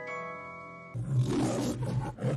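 A held, chime-like musical chord fading out, then about a second in the MGM logo's lion roar starts: a rough, pulsing roar.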